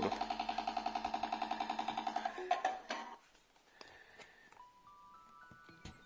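TomTom GO satnav switching itself on: a steady, rapidly pulsing electronic tone for the first two and a half seconds, then a run of four short tones stepping up in pitch near the end. The unit powers on by itself because its battery is failing.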